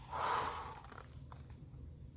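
A woman blowing out one breath through pursed lips, a short sigh of relief lasting under a second.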